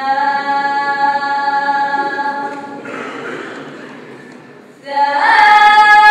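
Women's voices singing long, held notes a capella. The first note fades out over about three seconds; after a short dip, a new note glides up about five seconds in and is held loudly.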